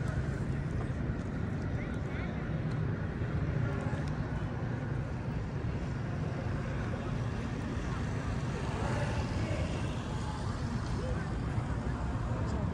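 Outdoor ambience: a steady low rumble with faint voices of people in the background.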